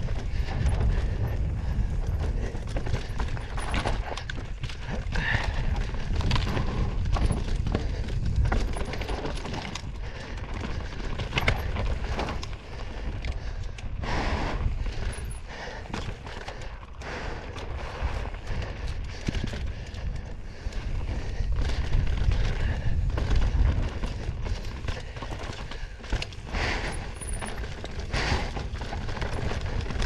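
Mountain bike ridden fast down a rough dirt trail, heard from a camera mounted on the bike or rider. A steady low rumble of tyres and wind runs under frequent uneven clatter and knocks from the bike bouncing over roots and rocks.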